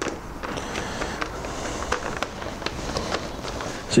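Handling noise from a camera cable being pulled and fed by hand through a motorcycle's plastic bodywork and frame: a steady scraping rustle with many small clicks and taps.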